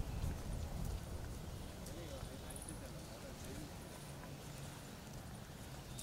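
Running footsteps on wet pavement as people keep pace beside a bicycle, irregular knocks over a steady low rumble of wind and handling on the microphone, with faint voices in the background.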